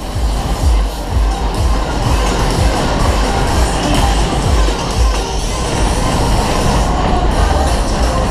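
Loud fairground ride music playing over the rumble of a Kalbfleisch Berg-und-Tal ride's cars running at speed round the undulating track.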